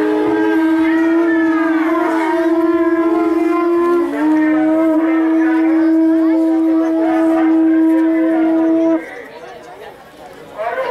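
A conch shell (shankh) blown in long, steady, horn-like notes. It breaks briefly about four seconds in, sliding a little lower before settling back on the note, then cuts off about nine seconds in. A second, higher conch note sounds with it for the first half second.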